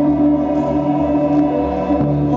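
Slow ambient instrumental music: two acoustic guitars playing over long, steady held tones.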